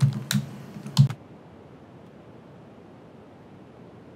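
Computer keyboard keys clicking as a terminal command is typed: two distinct keystrokes in the first second, then only a steady faint hiss.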